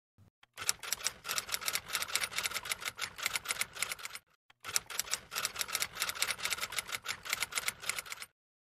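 Typewriter keystroke sound effect: rapid clicking at several keys a second, in two runs separated by a brief pause about halfway through. It accompanies text being typed out letter by letter.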